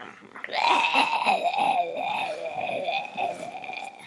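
A woman making one long raspy, wavering vocal sound, not words, starting about half a second in and lasting about three seconds.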